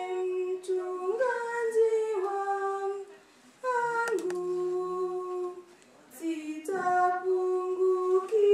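A solo female voice singing a church hymn through a microphone, holding long, drawn-out notes that slide between pitches, with two short breaks for breath partway through.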